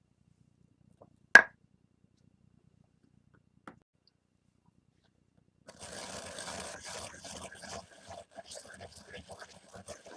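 A single sharp knock about a second in, then from about halfway a continuous gritty scraping of many small strokes: a stone pestle grinding frankincense resin in a volcanic-stone molcajete, working it down to a very fine powder.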